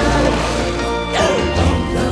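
A big water splash, a lion falling into a pool, about a second in, heard over orchestral film music.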